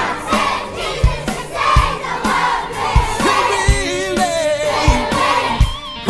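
A group of children singing and shouting along together to an upbeat song, over a steady drum beat.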